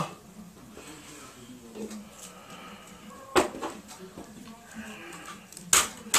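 Quiet handling of plastic wrestling action figures in a toy ring, with a sharp click about three and a half seconds in and another near the end.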